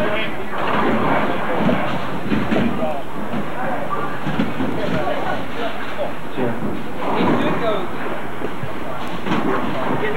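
Several people talking over one another, not clearly, over a steady background rumble and clatter of a busy bowling alley.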